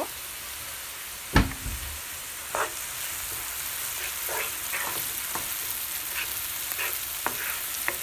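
Diced onion and garlic sizzling in oil in a nonstick skillet, with a wooden spoon scraping and stirring through it in the second half. A single loud knock comes about a second and a half in.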